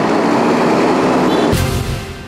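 Yellow Isuzu school bus engine running close by, a loud steady rumble. About one and a half seconds in it cuts to a news outro jingle that opens with a deep hit.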